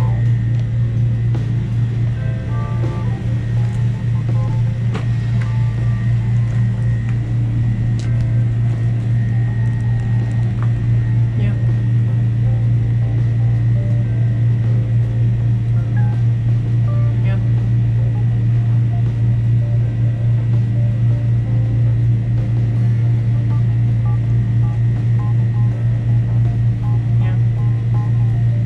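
A loud, steady low hum that runs unbroken, with faint music and scattered voices in the background.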